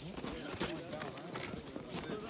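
Faint, indistinct voices of people close by, with a few soft knocks or steps.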